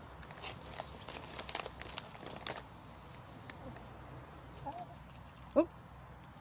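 Brown hens pecking and scratching in dry litter for mealworms: a scatter of quick taps and rustles, with a brief high chirp and a soft cluck or two later on.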